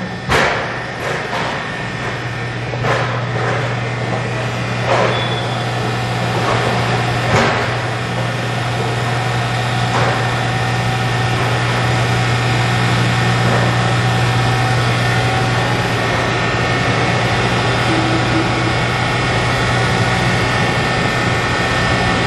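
The 15 hp electric motor drive of a Blommer carbon-steel jacketed melting tank running its sweep agitator: a steady low hum with fainter steady higher tones. A few sharp knocks come in the first ten seconds.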